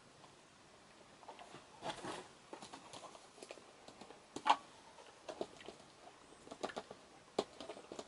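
Handling noise: scattered soft clicks, taps and rustles as a small album-style sleeve is picked up and moved about in the hands, with one sharper tap about four and a half seconds in. No music is heard.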